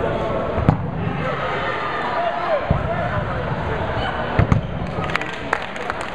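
Rubber dodgeballs thudding on the hard sports-hall floor and on players: a sharp hit about a second in, another near the three-second mark and a quick cluster a little after four seconds, then smaller knocks. Underneath, constant shouting and chatter from players and bystanders carries on.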